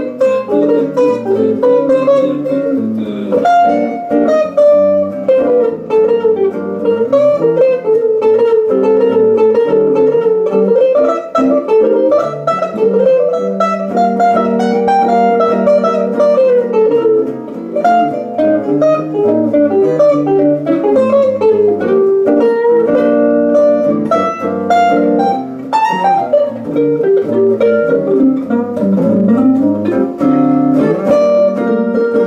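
A jazz guitar duo of two archtop guitars playing a medium-fast jazz tune, with a single-note melodic line moving over chords.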